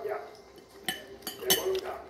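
Metal cutlery clinking against a ceramic plate: two sharp clinks, the first about a second in and the second about half a second later.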